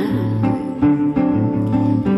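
Samba band playing an instrumental passage between sung lines: plucked guitar over held low bass notes.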